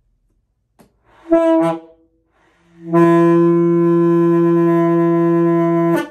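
Alto saxophone played by a beginner: a short note about a second in, then one long steady note held for about three seconds.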